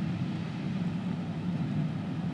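Steady low rumble of a railway carriage in motion, heard from inside the compartment.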